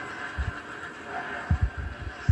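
Stock-car race sound from a NASCAR TV promo heard through a television's speakers: a steady engine and crowd haze, with several dull low thumps, the loudest about one and a half seconds in.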